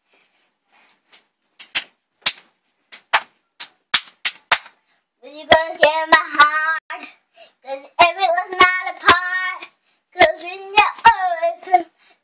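A run of sharp hand claps, about two a second, followed from about five seconds in by a young girl singing a melody, with more claps in between.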